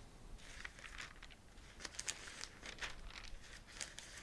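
Faint rustling and flicking of thin Bible pages being turned by hand, a quick run of short papery swishes.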